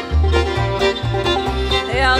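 Instrumental bluegrass: a banjo being picked in quick rolls over an upright bass playing low notes about twice a second.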